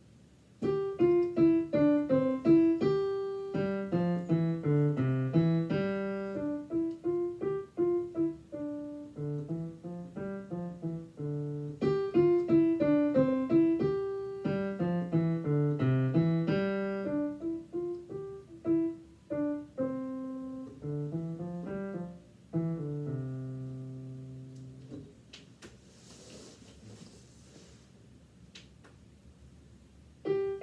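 Digital piano playing a simple melody with a left-hand accompaniment, the same phrase played twice over, the second time ending on a held low chord that dies away a few seconds before the end.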